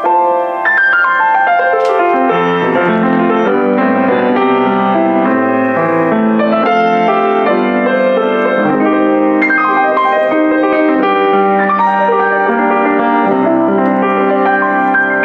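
Boston GP-156 baby grand piano being played: a run of notes falls in pitch over the first two seconds into full chords in the middle and lower register, with another phrase starting higher about two-thirds of the way through.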